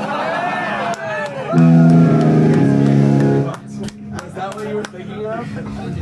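Electric guitar noodling on stage between songs, with a loud strummed chord ringing for about two seconds from about a second and a half in, then dropping back to quieter playing under band members' voices and laughter.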